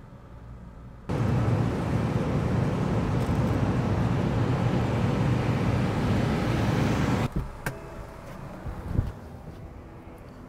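An MG6 sedan driving, a steady rush of engine and road noise. It cuts in about a second in and cuts off abruptly about six seconds later, followed by a few light knocks.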